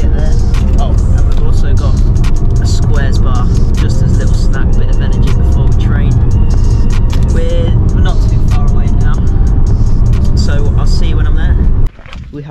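Steady low road and engine rumble inside a moving van's cabin, with music and a voice over it. The sound cuts off abruptly shortly before the end.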